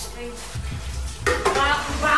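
Kitchen tap running into a metal pot in the sink, a steady rush of water, with a voice over it in the second half.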